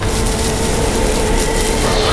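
Drama soundtrack drone: a loud, steady rumbling noise with a held low tone running through it, starting abruptly.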